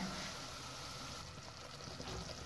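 Semolina roasting in hot oil in a pan on a low flame, sizzling faintly as a wooden spatula stirs it: a soft, steady hiss.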